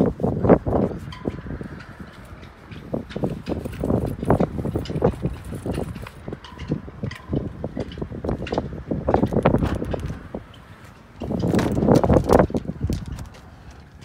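Irregular clicks, knocks and rustling from handling at a pickup truck's rear door, with a louder stretch of rustling about eleven seconds in.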